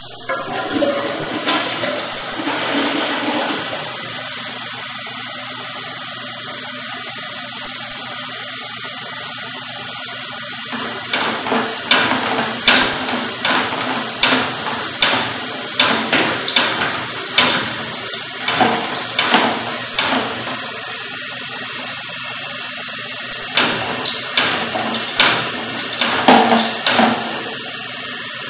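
Steady rush of running water in a drain, louder for the first few seconds. Sharp knocks about once or twice a second come in two stretches, one in the middle and one near the end.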